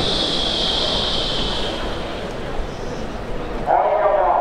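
Stadium public-address announcement ending with 'please be quiet', followed by a hushed open-air stadium ambience: a hiss that fades out about two seconds in over a low steady rumble, then a voice starting again near the end.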